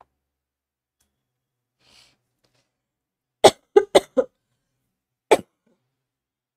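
A person coughing: a quick run of four coughs about three and a half seconds in, then a single cough near the end.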